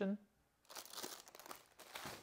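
A PE-HD plastic bag holding an instruction booklet crinkling and rustling as it is handled and set aside, starting about half a second in.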